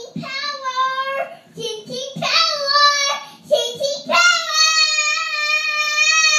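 A two-year-old girl singing three high notes, the last one held long and steady.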